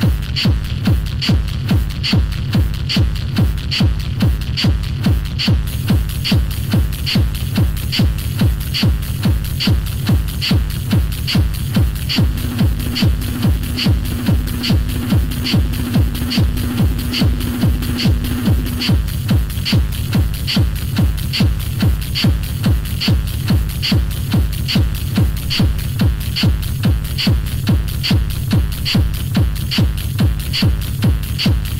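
Hard Chicago techno from a continuous DJ mix: a steady four-on-the-floor kick drum with crisp offbeat hi-hats. A brighter hiss of cymbals comes in about six seconds in. A held low synth note enters about twelve seconds in and drops out at about nineteen seconds, while the beat carries on.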